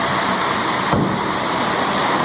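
Steady hiss of rain falling, with a single thump about a second in as a car door shuts.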